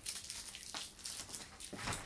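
Faint crinkling of a thin plastic seal strip peeled from a metal candy tin, with a soft click a little before the middle.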